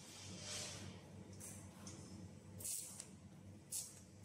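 Arc welder tacking titanium strips to a titanium tube frame: four short hissing bursts, one weld after another, over a low steady hum.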